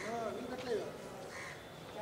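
Crows cawing a few times, short arched calls, over a background of people's voices outdoors.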